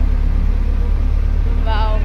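Steady low rumble of a road vehicle in motion, heard from inside it, with a woman's voice starting near the end.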